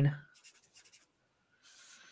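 Faint scratching of writing on paper, starting about two thirds of the way in, after a held spoken word trails off.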